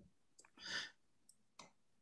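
Near silence in a video-call pause, with a few faint clicks and a short, soft breath about three quarters of a second in.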